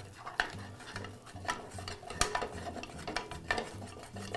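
Spatula stirring thick choux pastry dough in a stainless saucepan as an egg is beaten into it. The dough gives irregular wet scrapes and soft knocks against the pan, with a sharper knock about halfway through.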